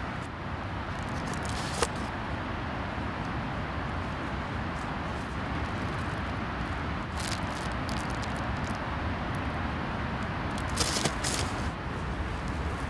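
Steady outdoor background noise, with a few brief rustles and scrapes in dry grass and leaves: one about two seconds in, some around the middle, and a louder cluster near the end.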